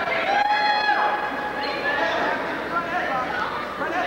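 Spectators and coaches shouting and chattering in a gym, several voices overlapping, with one long drawn-out shout a little after the start.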